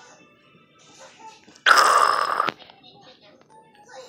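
A cartoon soundtrack heard off a TV's speaker: a loud, noisy vocal outburst from a character, just under a second long, about two seconds in, amid quieter dialogue and music.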